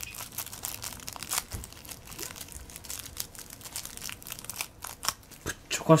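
Thin clear plastic wrapper crinkling in the fingers as it is torn open, a dense run of irregular crackles.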